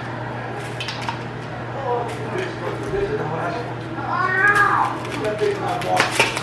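A voice-like call that rises and then falls in pitch, about four seconds in, with fainter bending calls before it, over a steady low hum.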